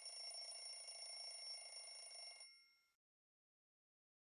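Mechanical twin-bell alarm clock ringing faintly, a fast metallic rattle of the hammer on the bells. It stops about two and a half seconds in, with a brief high ring left after it.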